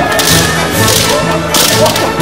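Bamboo shinai clacking and slapping against one another and against kendo armour in a many-sided melee, a run of sharp strikes with the loudest near the end, over background music.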